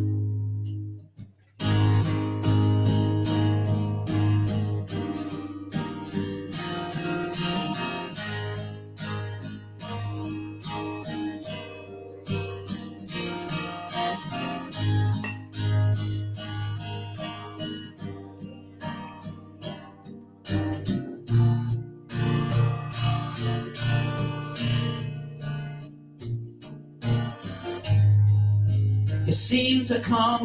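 An acoustic guitar strummed in a steady rhythm, playing the instrumental introduction of a folk song. There is a short break about a second in, then the strumming resumes.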